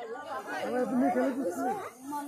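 People talking, several voices in overlapping chatter.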